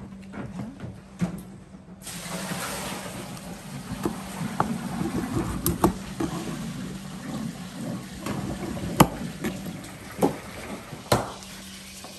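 Kitchen knife cutting raw guinea fowl on a wooden cutting board: scattered sharp knocks of the blade striking the board, the loudest about nine seconds in, over a steady hum and hiss that rises about two seconds in.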